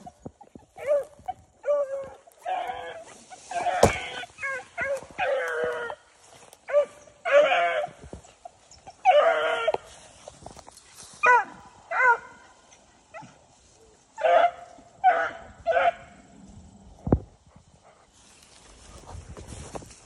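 Beagle baying on a rabbit it has just jumped: a string of separate, repeated mouth calls that break off about 16 seconds in. A single sharp crack comes about four seconds in.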